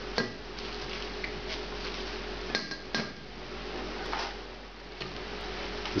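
A spatula stirring spinach into a thick curry in a metal saucepan, scraping and knocking against the pot, with two sharper knocks about halfway through.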